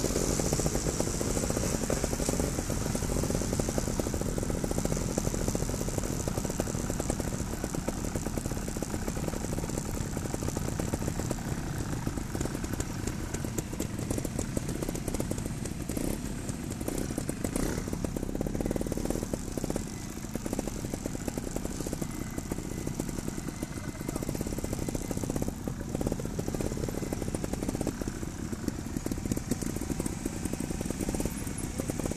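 Trials motorcycle engines running and revving unevenly on a dirt trail, continuous throughout.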